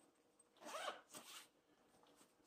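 Zipper on a Case Logic camera bag's lid pocket pulled in two short, faint strokes.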